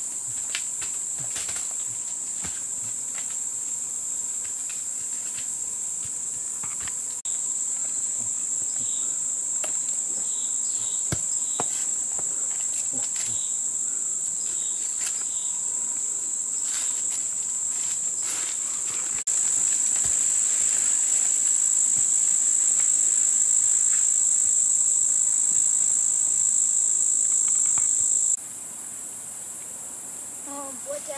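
A steady, high-pitched drone of forest insects, with scattered light clicks and rustles. The drone steps louder twice and cuts off abruptly near the end.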